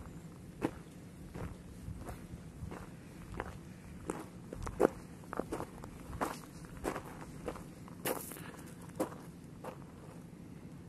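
Footsteps of a person walking on a loose gravel-and-dirt mountain trail, steady steps about three every two seconds, one harder step about five seconds in.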